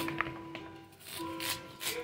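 Soft background music with long held notes, over a couple of short scrapes of a kitchen knife stripping kernels from an ear of fresh corn.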